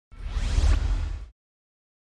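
Logo-intro whoosh sound effect: a rising swish over a deep low rumble, lasting about a second and cutting off sharply.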